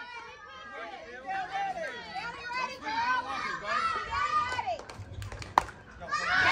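Spectators and children talking in the background, then near the end a single sharp crack of a bat hitting a pitched softball.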